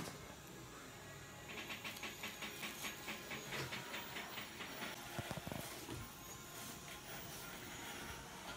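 Electric dental chair reclining: a faint motor hiss with a fast, even pulsing from about a second and a half in until about six seconds in.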